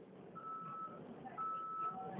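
Vehicle warning beeper heard from inside a bus: plain high-pitched beeps, each about half a second long, roughly one a second, over a faint low rumble.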